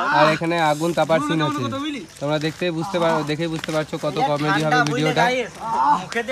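Men's voices chanting without words in long held low notes, the pitch wavering above a steady drone, with a short break about two seconds in.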